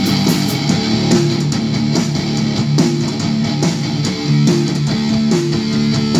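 Live rock band playing an instrumental passage with no vocals: electric guitar through a Marshall amp, bass guitar and a drum kit keeping a steady beat.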